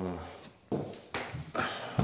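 A man's voice in a short drawn-out hesitation sound, then a few light knocks spaced about half a second apart.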